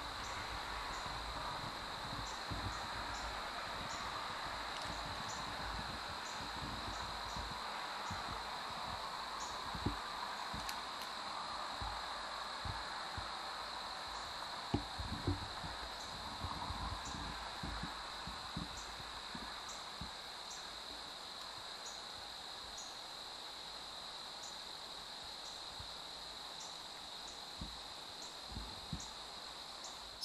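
Evening insect chorus: a steady high buzz with short chirps repeating at an even pace. A few soft knocks and rustles come through around the middle.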